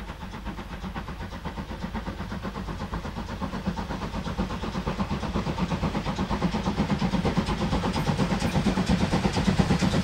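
Two-cylinder DR class 52 steam locomotive (52 8154-8) working a train and coming closer, its exhaust chuffing in an even beat of about four a second that grows steadily louder.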